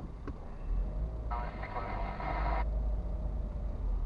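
Low, steady rumble of a car moving slowly in city traffic, heard from inside the cabin. About a second in, a thin, tinny voice-like sound, as from a radio, plays for just over a second and stops abruptly.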